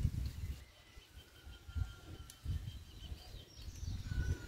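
Faint bird calls outdoors: thin, high, drawn-out notes and a few chirps near the end, over irregular low rumbling bumps on the microphone.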